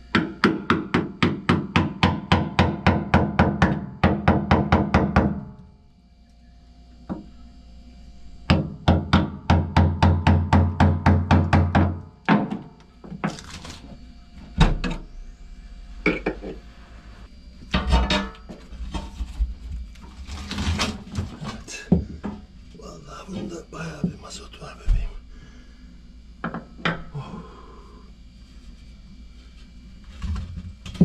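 Hammer strikes on steel, driving a screwdriver at the rusted screws of a boat's steel diesel tank cover: rapid ringing taps about four to five a second, in two runs of about five and three seconds. After them come scattered single knocks and scraping.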